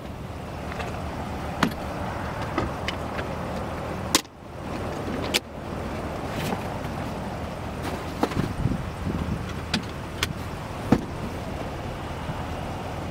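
Scattered clicks and knocks from a hand working the fold-out storage bin under a pickup's rear seat, over a steady low hum.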